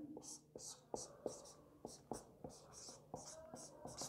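Marker pen writing on a whiteboard: a quick run of faint, short squeaks and taps as each stroke of the figures is drawn.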